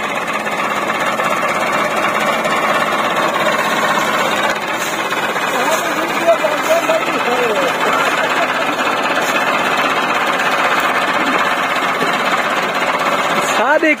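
Massey Ferguson 385 tractor's four-cylinder diesel engine running steadily with a rapid knocking clatter, faint voices behind it.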